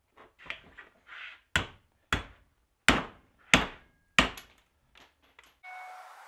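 A hammer smashing an ATV's CV axle and joint held in a metal bench vise: a few light knocks, then five heavy metal-on-metal blows about two-thirds of a second apart, each ringing briefly. The joint had seized and would not split off its circlip. Near the end the blows give way to a steady hiss with a faint whine.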